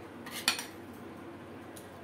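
A metal utensil clinks sharply once against the steel pot of simmering milk about half a second in, as soaked sago is added, with a fainter tick later.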